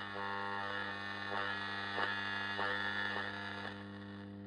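Weston four-band transistor radio giving out hiss and static over a steady hum, with a few faint clicks, as it is tuned on a band that pulls in no station. The sound drops a little in level near the end.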